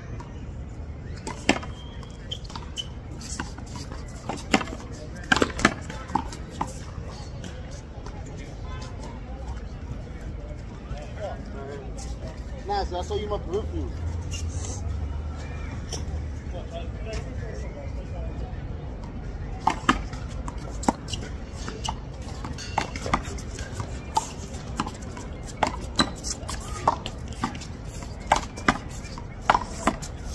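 One-wall handball play: a small rubber ball slapped by hand and smacking off the concrete wall in sharp, irregular hits. The hits come in two rallies, one in the first few seconds and another from about two-thirds of the way through, with only faint voices between.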